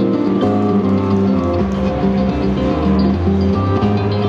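Harp-like string instrument played live through an amplifier: a melody of held, ringing plucked notes over a low sustained bass line.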